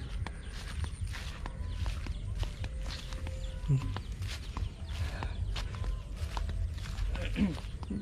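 Footsteps on dry straw and grass, with irregular small crunches and rustles over a steady low rumble.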